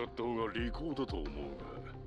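Anime dialogue: a character's voice speaking Japanese, with background music underneath.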